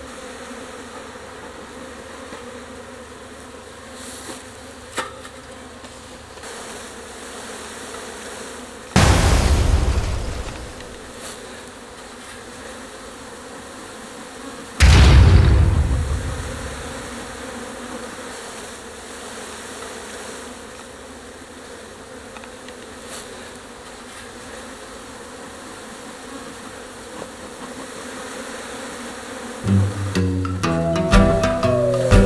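Honeybee colony buzzing in a steady hum at the open hive. Two sudden loud thumps, each trailing off in a brief rush, about nine and fifteen seconds in; the second comes as a frame is jolted to shake its bees into the box.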